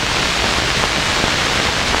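A steady, even hiss that stops abruptly at the end.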